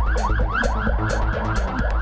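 Electronic siren yelp, a fast wail rising and falling about five times a second, over a steady low beat from the background music.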